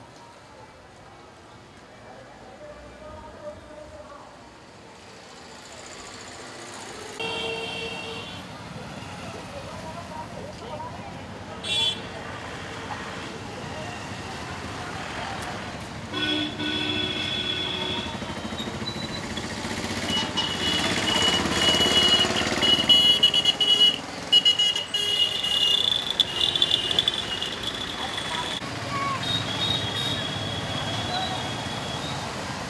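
Busy outdoor fair ambience: background voices and traffic noise that grow louder, with vehicle horns tooting several times.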